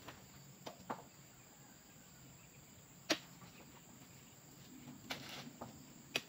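Sharp knocks from oil palm fruit bunches being lifted on a spiked pole and tossed onto a small truck's bed. There are two quick knocks under a second in, the loudest about three seconds in, and a cluster near the end. A steady high insect drone runs underneath.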